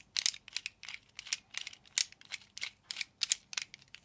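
Plastic and metal parts of a cheap mini tripod clicking and knocking against each other as its head assembly is screwed back onto the legs by hand: a quick, irregular run of sharp clicks, several a second.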